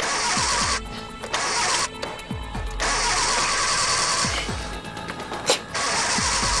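A car engine being cranked by its starter in repeated bursts of about a second, with short pauses between tries, the engine not catching.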